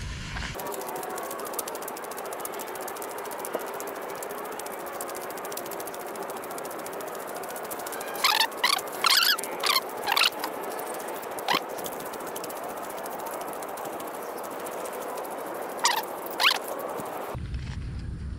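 Steady outdoor background hiss, broken twice by clusters of short, high squeals: several about halfway through and a couple more near the end.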